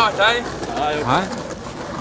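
Young men's voices: a loud shout at the very start, then quieter short vocal noises and chatter.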